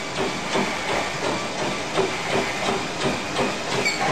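Treadmill in use: the running belt and motor hiss steadily under a regular beat of running footfalls on the deck.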